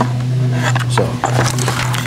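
Cardboard box and wire-harness packaging being handled, giving short crackling and rustling noises, over a steady low hum.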